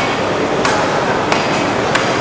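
Butcher's cleaver chopping meat on a wooden block: sharp, regular strikes about every two-thirds of a second, over the steady din of a busy market hall.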